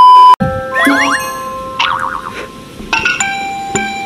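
A loud, steady single-pitch test-tone beep over TV colour bars, cut off abruptly about a third of a second in. Then a short playful music sting follows, with rising slide-whistle-like glides, a warbling tone and bell-like dings.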